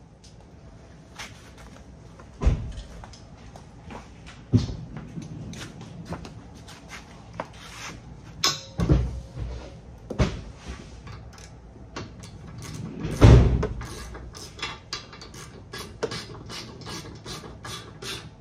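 Scattered clicks and knocks of a hand tool and metal parts as an Allen driver turns the tire carrier's hinge bolts, with a few louder thumps spread through.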